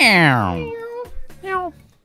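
Meow-like cries: one long call that slides steeply down in pitch, then a short call about halfway through.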